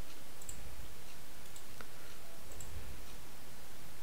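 About five sharp, single computer mouse clicks, spaced irregularly, over a steady background hiss.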